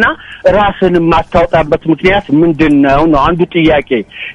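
Speech only: a man talking in Amharic, continuously.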